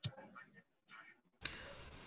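Faint, broken voice fragments and a click over a video call's audio. About a second and a half in, the background hiss jumps up suddenly and holds, as a microphone opens just before someone speaks.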